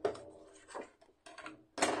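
Black card stock being handled on a scoring board: a few short scrapes and rubs, then a louder brief swish near the end as the sheet is slid off the board.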